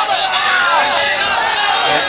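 Crowd of supporters shouting and yelling encouragement at a tug-of-war pull in progress, many voices overlapping with rising and falling cries.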